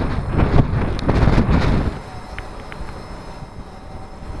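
Strong gusting wind buffeting the microphone, a heavy rumbling roar, which cuts off sharply about halfway through to a much quieter, steadier wind hiss.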